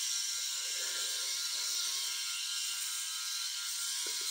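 VeroShave 2.0 multi-head rotary electric shaver running steadily as it is passed over a shaved scalp: an even, high whir.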